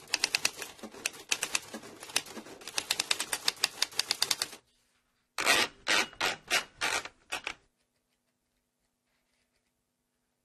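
Typewriter keys clacking in fast runs, then a short pause and a handful of slower, louder strokes. The typing stops about three-quarters of the way in, leaving only a faint low hum.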